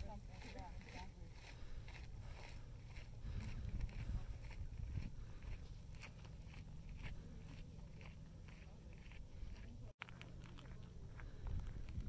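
Footsteps of a walker on a dirt and gravel trail, crunching at an even pace of about two steps a second, over a steady low rumble.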